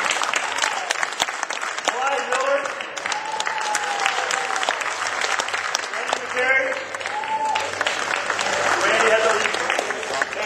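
An audience applauding, with voices talking and calling out over the clapping.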